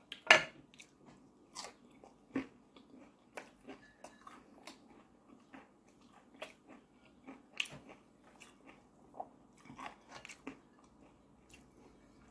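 Close-miked eating sounds of crispy battered fried fish: the batter crunching as it is broken apart, bitten and chewed. A sharp crunch just after the start is the loudest, followed by scattered smaller crunches and chewing.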